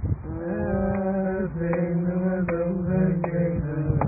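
A man chanting a slow wordless melody in long held notes, the sound muffled with no highs. Sharp short taps come every half second or so in the second half.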